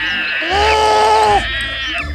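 A cartoon voice actor's single drawn-out vocal cry, held for about a second, starting about half a second in.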